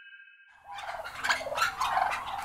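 A large flock of domestic turkeys in a shed, gobbling and calling all at once. The sound starts about half a second in, as the last of a held musical note dies away.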